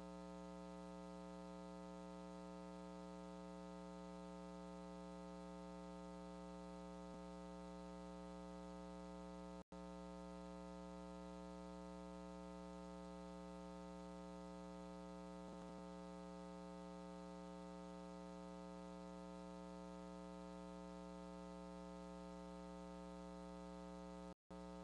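Faint steady electrical hum with a stack of even overtones, which drops out for an instant about ten seconds in.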